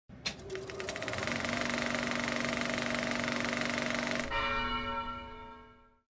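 A bell-like ringing with a fast, even rattle of repeated strikes. About four seconds in the rattle stops and the ringing tone dies away.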